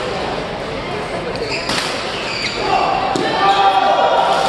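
Badminton rally in a large hall: two sharp racket strikes on the shuttlecock about a second and a half apart. Shoes squeak on the court floor in the second half.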